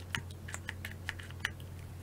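Light, irregular clicks and ticks of a small plastic pump bottle of gel moisturizer being handled and pumped, about ten small clicks in two seconds.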